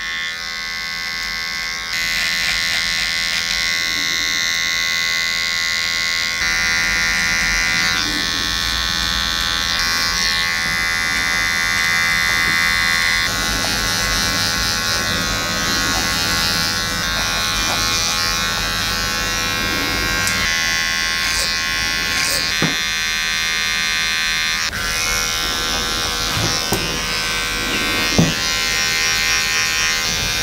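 Cordless T-blade hair trimmer buzzing steadily as it trims the sideburn and neckline hair, its tone shifting a few times as it works through the hair. A couple of brief clicks near the end.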